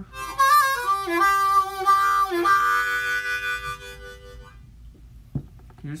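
Custom Hohner Crossover diatonic harmonica in C being played: a few short notes and chords stepping up and down, then one chord held for about two seconds, stopping about four and a half seconds in.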